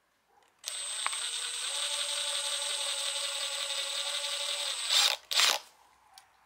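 Drill motor running a blind rivet adapter's pulling mechanism, a steady whine with a high-pitched tone for about four seconds, then two short loud clatters as it stops, just before the spent mandrel comes out of the nose.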